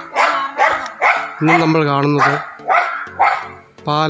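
A man talking continuously in a low voice; the speech recogniser wrote no words here.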